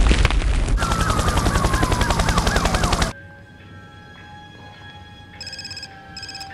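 Loud film sound effect for the ground cracking open, a heavy rumble with a fast rattling crackle and a whistle falling in pitch, which cuts off suddenly about three seconds in. Faint music follows, and a telephone bell starts ringing near the end.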